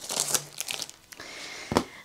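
Plastic shrink-wrap crinkling as scissors cut into it, with one sharp knock about three quarters of the way in.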